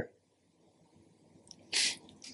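Near silence, then near the end one short, sharp intake of breath before speaking.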